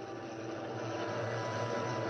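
Steady hiss with a low, even hum, from motorised disinfectant mist sprayers spraying.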